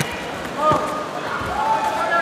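Taekwondo fighters' short shouted cries as they kick, twice, with a few dull thuds of kicks landing and feet on the mat.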